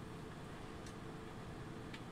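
Quiet room tone: a steady low hum and hiss, with one faint click a little under a second in.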